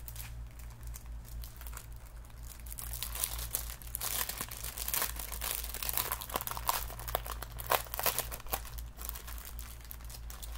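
Packaging crinkling as it is handled and rummaged through, a run of quick irregular crackles that grows busier a few seconds in. A low steady hum sits underneath.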